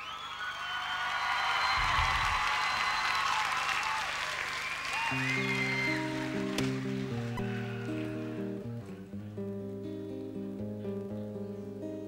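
Audience applause with a few whistles, swelling and then fading over the first five seconds. About five seconds in, the song's instrumental introduction begins with slow, held chords.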